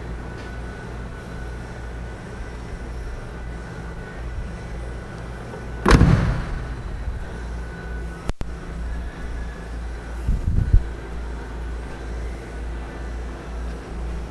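Steady low hum with a loud thump about six seconds in and a softer thump about ten seconds in: handling knocks from a handheld camera moving around a car's interior.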